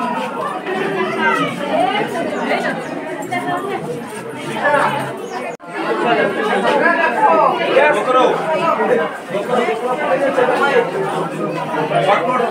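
Several people's voices chattering, not one clear speaker, with a momentary dropout about halfway through.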